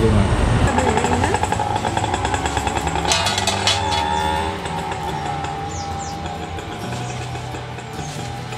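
A small motor vehicle's engine running on the road, loudest in the first half and fading after about four seconds, with background music underneath.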